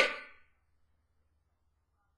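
Near silence: a man's voice trails off in the first half second, leaving a dead pause with only a very faint low hum.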